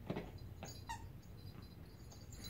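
A poodle nosing and pushing a plastic clamshell treat toy: a knock of the toy at the start, a softer knock about half a second later, and a brief high squeak about a second in.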